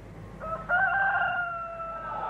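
A single drawn-out call over a low hum: it rises in two quick steps about half a second in, then holds a steady, slowly falling pitch for over a second.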